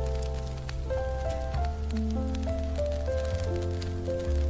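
Smooth piano jazz instrumental: held chords and melody notes over deep bass notes that change about once a second. Behind it runs an ambience layer of scattered small ticks and patter.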